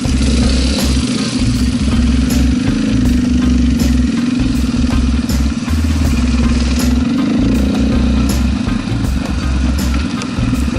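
KTM single-cylinder dirt bike engine idling close by, a steady running drone with uneven low pulsing underneath.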